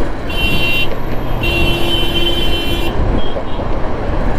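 A vehicle horn honking twice, a short blast and then a longer one of about a second and a half. Steady road and wind noise from the moving motorcycle runs under it.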